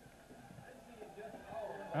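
Faint, indistinct background voices and murmur, a little stronger in the second half.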